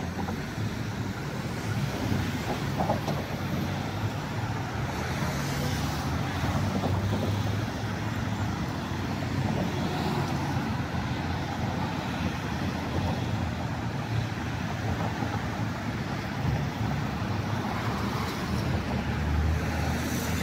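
City road traffic at a busy intersection: cars and other vehicles driving past, a steady wash of engine and tyre noise.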